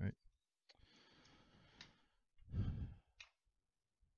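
A man breathing out audibly while he works: a long, soft sigh-like exhale, then a shorter, louder breath about two and a half seconds in. A few small clicks of metal parts being handled are scattered among the breaths.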